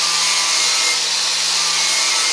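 DeWalt angle grinder with a flap disc running steadily against a car's rear quarter panel, grinding off paint and residue so the TIG weld will stick.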